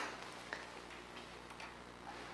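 Quiet room tone with a low steady hum and a few faint, light clicks.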